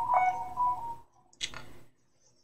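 Short electronic beep tones, two or three steady pitches overlapping, fading out about a second in, followed by a brief soft click or rustle.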